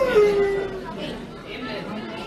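A man's long, drawn-out cry that rises and then falls in pitch, fading out about a second in, over the chatter of several people indoors.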